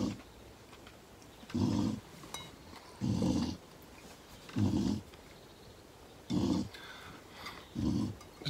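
A dog making short, low breathing sounds, like snoring, that repeat evenly about every second and a half.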